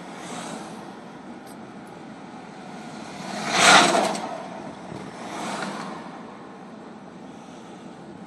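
Steady road and tyre noise heard from inside a moving car's cabin. An oncoming car passes in a rising-and-falling whoosh about three and a half seconds in, and a fainter one passes about five and a half seconds in.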